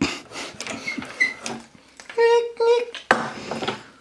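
Wooden clicks and scraping at a freshly hand-drilled hole in a bamboo bench top, where the drilled-out wooden plug is being worked free. About halfway through, a voice sings two short, level notes, and a breathy rush of noise follows near the end.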